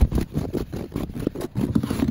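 Irregular crunching and knocking of footsteps on snow-covered wooden deck stairs, over a low rumble.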